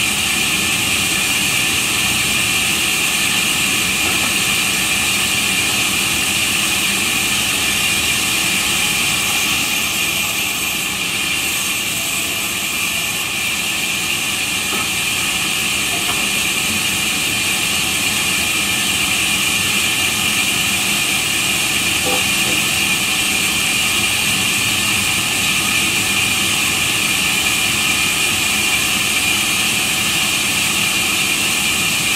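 Sawmill band saw running steadily, its blade ripping wooden planks into battens as they are fed through, with a loud, high-pitched whine over the noise of the cut.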